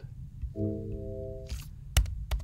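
A sine-wave additive synthesizer note built in Max/MSP, its partials set to irregular, inharmonic multiples of the fundamental, sounds for about a second as a steady, organ-like chord of several tones and then cuts off. A sharp click follows near the end.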